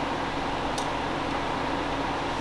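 Steady mechanical room hum, a low drone with a few steady tones under it, and one faint tick near the middle.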